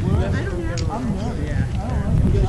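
Background chatter of several people talking at once, indistinct, over a steady low rumble of wind on the microphone.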